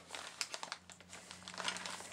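Packaging crinkling and rustling in a subscription box as the next product is taken out, with a few light irregular clicks.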